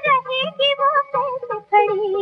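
High female voice singing a Hindi film song melody, the pitch bending and breaking into short phrases, with a low accompaniment under it.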